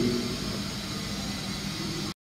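Steady background hiss and faint hum of the recording's microphone and room, with no speech.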